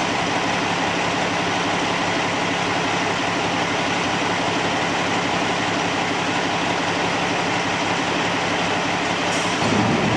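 Fire apparatus diesel engines running steadily, a constant drone with a steady hum in it. Just before the end the low part of the sound changes and grows slightly louder.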